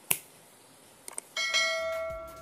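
Subscribe-button animation sound effects: a sharp mouse click right at the start, a couple of faint ticks, then about one and a half seconds in a bright notification-bell chime that rings on and slowly fades.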